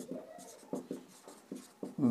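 Marker pen writing on a whiteboard: a series of short, faint scratching strokes as letters are written.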